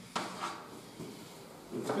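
A few short taps and strokes of chalk on a chalkboard as symbols are written. The two sharpest come just after the start and a fainter one follows about a second in. A man's voice starts right at the end.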